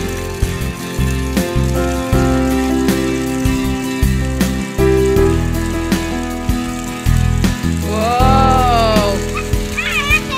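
Background music with sustained notes, a bass line and a steady beat. Near the end a single short rising-and-falling call sounds over it.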